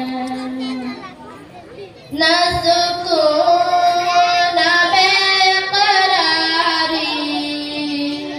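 A young female voice singing an Urdu ghazal solo into a microphone, with long held, ornamented notes and no instruments. A held note ends about a second in, and after a short lull a louder phrase begins.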